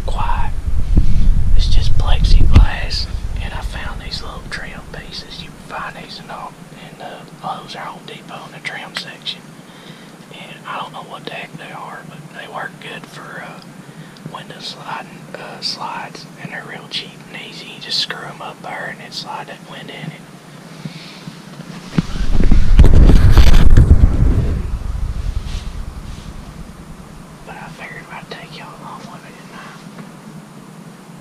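A man whispering in short, faint phrases. Two loud low rumbles on the microphone break in, one in the first few seconds and one about two-thirds of the way through.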